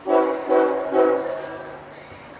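Locomotive air horn sounding three short blasts in quick succession, nearly running together, then fading away after about a second and a half.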